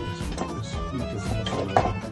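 Music with string instruments and a steady beat, with a short sharp sound near the end.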